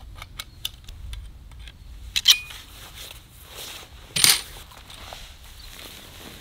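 Metal tent-pole sections clinking and clicking as they are handled and fitted together: several light clicks, then a loud ringing clink about two seconds in and another loud clank about four seconds in.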